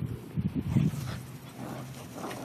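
Bulldog puppies making a quick run of short, low noises in the first second of their play, then going quieter.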